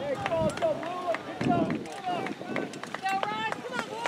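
Several overlapping voices of players and sideline spectators shouting and calling out at a youth soccer match, some high-pitched calls in the second half, with a few sharp knocks scattered through.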